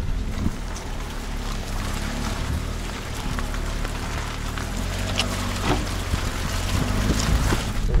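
Car driving slowly over a wet, stony dirt road: a steady low engine hum under the hiss of tyres on gravel and wet ground, with a few short knocks of stones.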